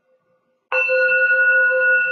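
Small Tibetan singing bowl struck once with its mallet about two-thirds of a second in, then ringing on with a steady low tone and several higher overtones.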